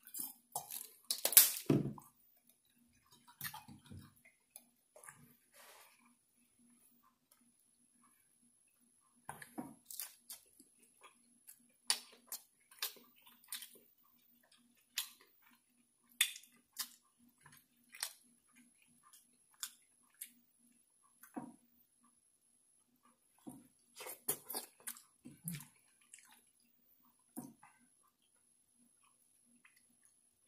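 Close-miked eating sounds: wet chewing and lip smacks of shrimp-boil food in separate short smacks and clicks with quiet gaps, loudest in the first two seconds. A faint steady low hum lies underneath.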